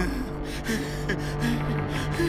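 A cartoon pig character panting in quick, repeated panicked gasps for air, as if the air were running out, over background music.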